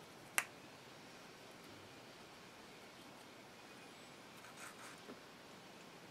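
A single sharp click about half a second in, then faint soft handling sounds near the end, from a small hand tool working resin filler into a hole in a wooden gunstock, over quiet room tone.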